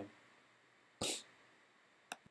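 A single short cough from a man close to the microphone, about a second in, over faint room tone.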